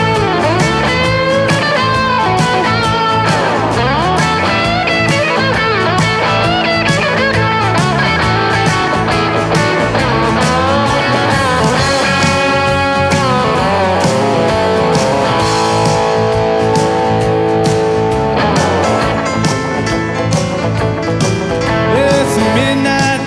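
Live country-rock band playing an instrumental break: an electric guitar lead with sliding, bending notes and long held notes over drums and bass guitar.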